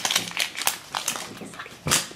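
Hands handling a plastic toy egg in its printed plastic wrapper: crinkling and scattered small clicks of plastic, with one sharper click near the end.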